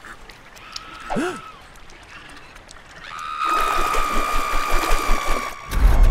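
Animation sound effects: a short squeaky pitched call about a second in, then a steady high-pitched tone held for about two and a half seconds. A low engine-like rumble sets in just before the end.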